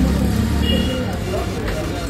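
People talking over the steady hum of traffic on a busy street.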